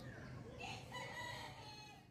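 A rooster crowing once: one long call that rises, then holds for about a second and a half.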